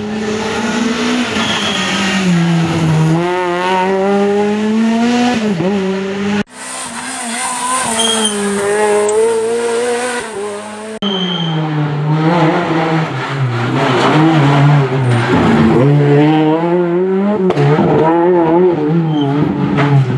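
Renault Clio R3C rally car's two-litre four-cylinder engine revving hard at full throttle as it passes, its pitch climbing and dropping repeatedly through gear changes. Several passes are cut together, with abrupt breaks about six and eleven seconds in.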